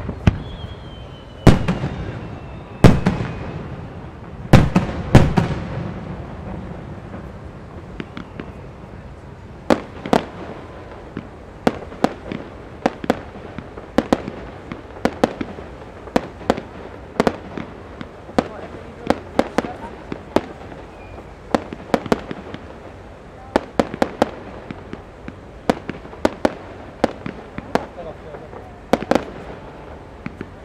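Japanese aerial fireworks shells bursting: a few heavy booms that trail off slowly in the first six seconds, then from about ten seconds a long run of sharper, smaller reports, often two or three in quick succession.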